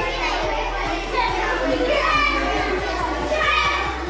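Children's voices and shouts over background music with a quick, regular drum beat.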